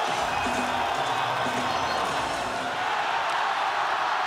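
Ice hockey arena crowd making a steady, even noise, with music playing over it.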